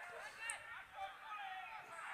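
Faint, far-off shouts and calls from footballers on the pitch during play.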